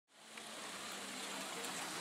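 Faint, steady background hiss of outdoor ambience, fading in just after the start.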